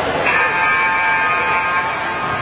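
An electronic match buzzer sounds once as a steady, high, multi-toned tone for about a second and a half, over the noise of the hall. Coming just as the fighters square off and then start to engage, it signals the start of the round.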